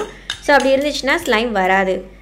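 A metal spoon scraping and clinking against a glass cup as slime is scooped out, under a woman's voice.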